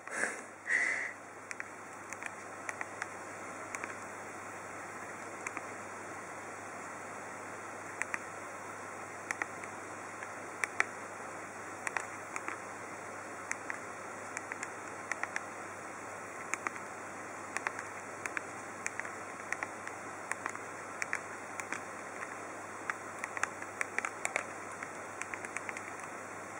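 Nokia 1100 keypad being pressed while typing a text message with predictive text: an irregular run of short, faint clicks, a few to the second, over a steady hiss.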